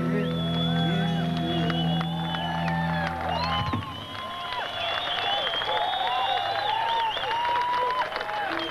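A rock band's final held chord rings out and cuts off abruptly almost four seconds in, under a concert crowd cheering, whooping and whistling. The crowd carries on after the chord stops.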